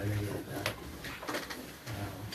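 Low murmur of voices around a table with a single sharp clink of tableware, a tea glass set on its saucer, about two-thirds of a second in.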